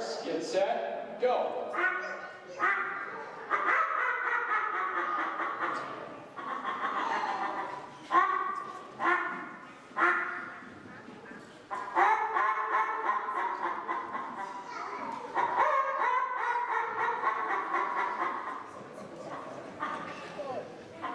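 Hand-held game call imitating an animal's calls: a run of short calls with sharp starts, each fading quickly, about a second apart, then longer, drawn-out calling.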